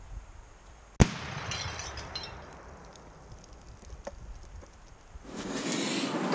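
A single sharp shot about a second in at a toilet set up as a target, followed by the clinks of breaking pieces.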